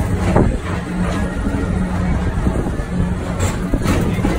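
Tomorrowland Transit Authority PeopleMover car riding along its elevated track: a steady low rumble and hum from the car and its linear-induction drive, with a light knock shortly after the start and another near the end.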